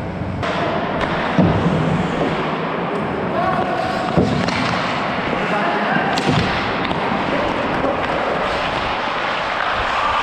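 Ice hockey game sounds from a skating referee's helmet microphone: a steady scraping hiss of skates on ice, broken by three sharp knocks about a second and a half in, four seconds in and six seconds in, typical of stick and puck hits on the boards. Players' voices call out faintly in between.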